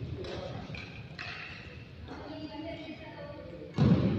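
Badminton play: two sharp racket-on-shuttle hits early on, then a heavy thud near the end, under faint background voices.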